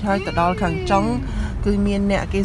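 High-pitched voices inside a moving car, one drawing out a long sliding-down call, over the car's low engine and road rumble.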